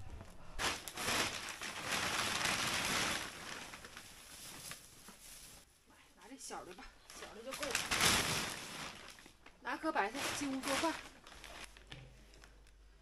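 Plastic sheeting and bags rustling and crinkling in bursts while frozen cabbages are uncovered, with a few short spoken words near the end.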